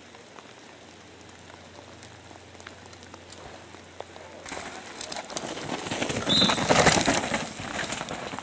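A downhill mountain bike comes past close by, its knobby tyres crunching and skidding on dirt and rock and the bike rattling. The noise builds from about halfway through and is loudest shortly before the end.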